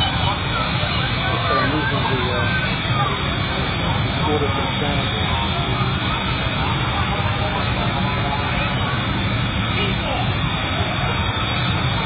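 Jet car's jet engine running with a steady, unchanging roar, with people's voices faintly over it.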